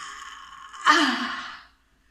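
A woman's breathy gasp, then about a second in a louder drawn-out wordless vocal cry that falls in pitch and trails off: an excited, amazed reaction.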